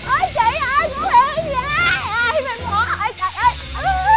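A man's voice blared through a handheld megaphone, imitating the revving and popping of a motorbike exhaust in warbling up-and-down wails, over background music.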